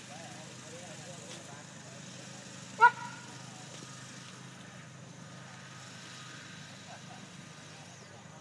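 Faint murmur of distant voices over a steady low hum, broken once about three seconds in by a single short, loud bark.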